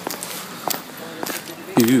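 Footsteps on a paved street: sharp clicks about every half second while walking. A voice says "Ooh" near the end.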